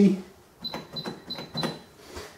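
Four key presses on a Sharp XE-A202 cash register's keypad, each giving a short, high electronic beep, about a third of a second apart, as the four digits of the year are keyed in.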